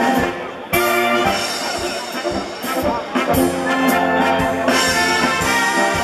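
A brass band of trumpets, tubas and other brass playing a polka live with a steady beat. The band drops away briefly about half a second in, then comes back in together on a loud chord.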